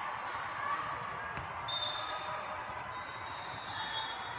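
Busy indoor volleyball-hall ambience: a steady din of crowd chatter, with scattered sharp thuds of volleyballs being hit and bounced on the surrounding courts. A thin high tone sounds briefly about two seconds in and again near the end.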